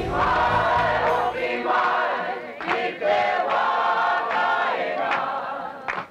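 A choir of voices singing in phrases of a second or two, with short breaks between them. A low bass accompaniment fades out about a second and a half in.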